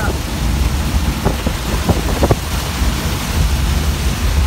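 Heavy rain drumming on a van's windscreen and body over the steady low rumble of the van driving on a wet road, with a few short knocks in the middle.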